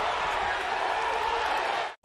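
Arena basketball crowd making a steady din, which cuts off abruptly near the end.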